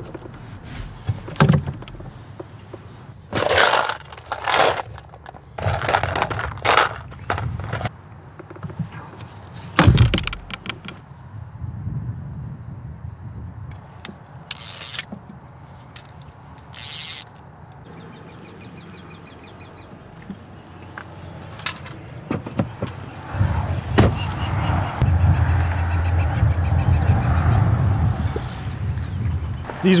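Fishing gear being handled on a boat deck in the dark: a string of separate knocks, scrapes and clatters. A low steady rumble builds over the last several seconds.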